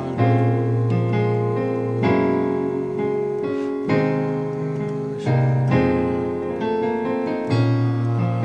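Gospel piano chords in A-flat major played with both hands, a new chord struck about every two seconds and left to ring.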